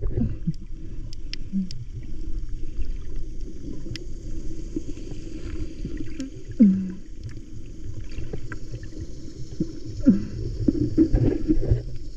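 Muffled underwater sound from a camera held just below the surface: water moving around the camera, with scattered faint ticks and a few short falling low tones, the loudest about six and a half seconds in.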